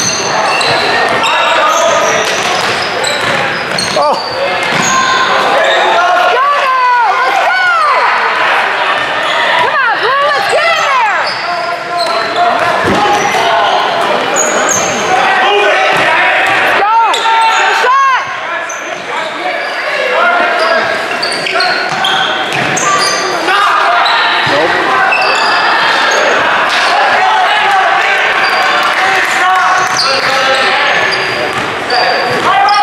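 Basketball game on a hardwood gym floor: the ball bouncing, sneakers squeaking in short rising and falling chirps, and players' and spectators' voices, all echoing in the large hall.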